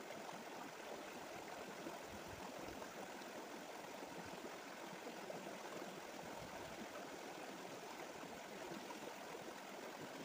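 Shallow rocky stream running over stones, a steady, even rush of water.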